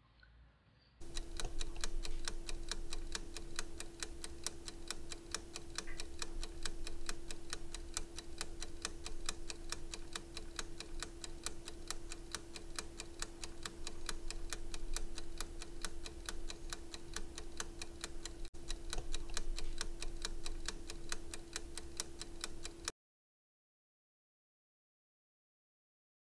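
Rapid, evenly spaced ticking like a fast clock over a steady low hum, starting about a second in and cutting off abruptly near the end, with one brief break shortly before the end.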